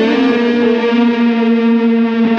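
Electric guitar played through a Dunable Eidolon boost/delay/reverb pedal: a chord is held and rings out steadily, its notes sustaining at one pitch with reverb and echo trails.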